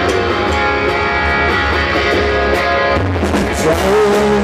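Live rock band playing an instrumental passage: electric guitar, electric bass and a drum kit with cymbals. The drums and cymbals fill out about three seconds in.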